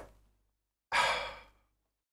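A man's single short breath out, like a sigh, about a second in, fading away over half a second.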